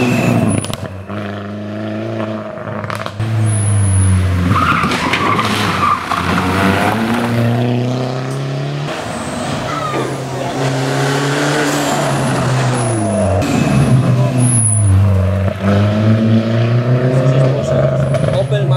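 Mini Cooper S rally car's engine revving hard and lifting off repeatedly as it drives up the stage toward the camera and passes, loudest shortly before the end.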